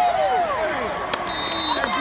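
Several voices shouting and calling over one another, with a short referee's whistle blast, a steady high tone of about half a second, in the second half and a couple of sharp knocks.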